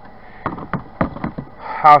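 A quick run of about six light clicks and knocks within a second, the sound of tools or parts being handled.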